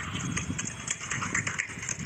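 An engine idling, an uneven low rumble with scattered clicks over it.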